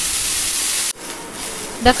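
Chopped onions sizzling in hot oil in a pan, a steady hiss that cuts off abruptly about a second in and continues as a fainter sizzle.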